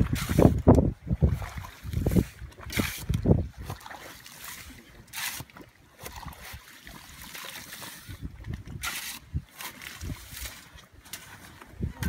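A shovel digging into wet, geothermally heated sand to unearth buried rye bread: several separate scraping strokes of the blade in the ground. Low rumbling noise over the first few seconds.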